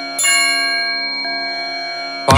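A struck bell-like tone in a devotional music track, sounding once about a fifth of a second in and ringing on with many overtones as it slowly fades.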